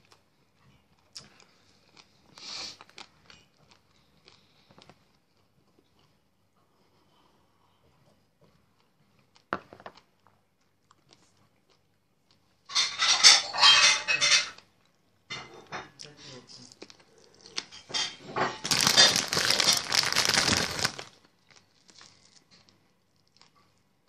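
Packaging handled close to the microphone: two loud bursts of crinkling, one about halfway through lasting under two seconds and a longer one near the end, with faint mouth and eating sounds and a single click in the quieter first half.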